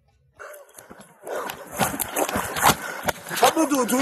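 Sound of recorded footage of a police officer wrestling with a man, resuming after a pause: scuffling, rustling and knocking with strained, unclear voices.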